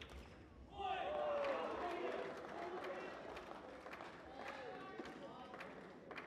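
Indistinct talking of several people, echoing in a large sports hall, loudest about a second in and then fading. Sporadic sharp taps sound throughout.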